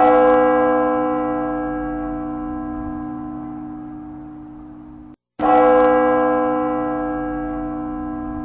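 A large church bell tolling slowly as a mourning knell: struck once at the start and again about five and a half seconds later, each stroke ringing on and fading slowly.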